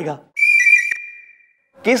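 A short, high whistle sound effect: one steady note that starts sharply and fades out over about a second.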